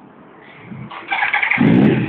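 2002 Yamaha YZF-R1's 998 cc inline-four engine being started: the electric starter cranks briefly about a second in, and the engine catches at about a second and a half and runs loudly.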